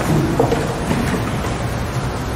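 Low rumbling handling noise with a few knocks as chairs, music stands and cellos are set in place near the microphones.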